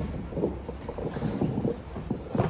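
A person shuffling and settling on a vinyl floor mat behind a plastic chair: short rustles and scuffs of cotton gi fabric and body on the mat, over a steady low microphone rumble.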